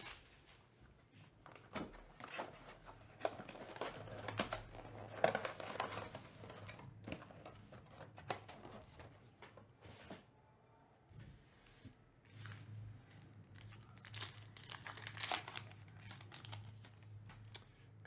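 Quiet crinkling and tearing of the plastic wrap and cardboard of a sealed trading card box being opened by hand, with scattered light clicks and taps as the packaging is handled. A faint low hum comes and goes in the background.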